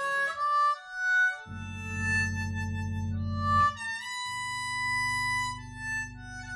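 Harmonica playing a slow melody of long held notes, joined about one and a half seconds in by an electric bass holding long low notes, the bass changing note a little after the middle.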